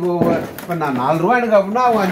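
A man talking steadily, with one sharp knock about a fifth of a second in.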